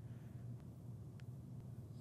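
Quiet room tone with a low steady hum, and two faint computer-mouse clicks about half a second apart near the middle.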